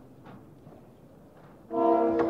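Orchestra of a live opera performance: a quiet pause with only faint background noise, then near the end a loud held chord with brass enters suddenly.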